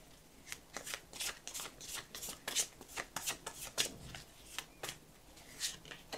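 A deck of Light Seer's Tarot cards being shuffled by hand: a quick, irregular run of soft card slaps and snaps, with one louder snap near the end as a card is pulled from the deck.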